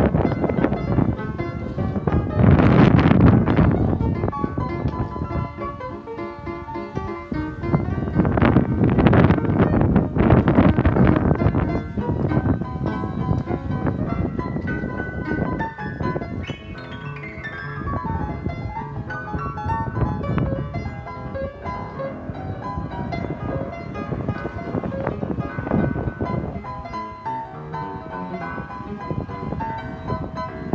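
Spinet upright piano being played with both hands in chords and runs, loudest in heavy chords a few seconds in and again around ten seconds, with a descending run of notes past the middle. The piano has been tuned up but is still due a couple more tunings.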